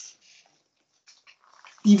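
A pause in speech: a brief hiss as the last word ends, near silence with a few faint ticks, then talking resumes near the end.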